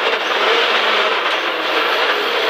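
Rally car at speed heard from inside the cabin: the engine running hard under loud road and tyre noise.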